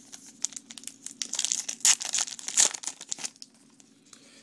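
Trading-card pack wrapper crinkling and tearing as a pack is ripped open: a quick run of crackles, loudest about two seconds in, dying away after about three seconds.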